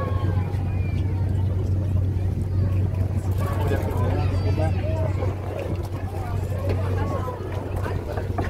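Boat engine running steadily with a low hum, under people talking aboard.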